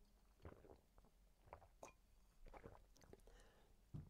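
Near silence, with a few faint small clicks and gulps of a person drinking from a glass.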